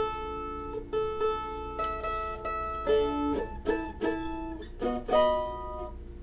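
Mandolin strummed: a series of chords, each left to ring, with quicker strums near the end.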